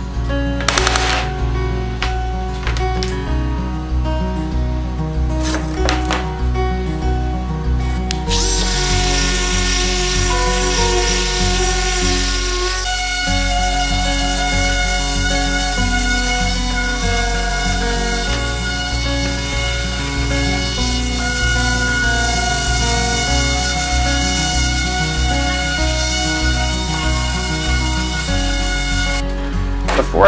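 Background music with a steady beat; from about eight seconds in, an electric random orbital sander runs on the primed wooden frame, stopping near the end.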